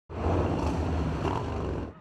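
Loud motorcycle engine running, a deep rumble with a rough exhaust, cut off abruptly near the end.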